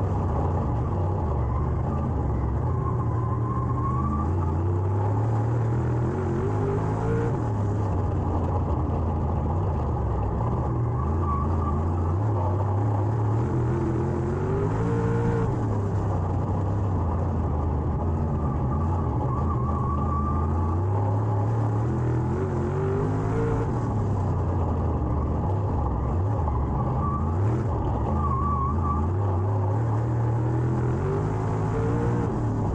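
Dirt late model race car's V8 engine, heard from inside the car at racing speed. It revs up on the straights and eases off into the turns, the pitch rising and falling about every eight seconds, once a lap.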